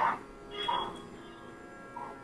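Low steady electrical hum and buzz in a pause of speech, made of several thin high tones held level. A brief faint sound comes about two-thirds of a second in.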